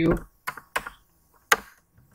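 Computer keyboard keystrokes: three separate key clicks with short gaps, the last one the loudest.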